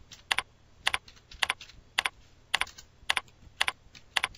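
Computer keyboard keys struck one at a time to type in a telephone number, at an even pace of about two strokes a second, each stroke a sharp double click.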